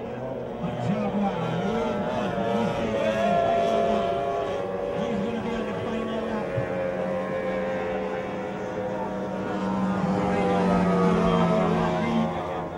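Outboard engines of tunnel-hull race boats running flat out, a steady high engine drone drifting slightly in pitch. The drone swells as boats pass, about three seconds in and again near the end.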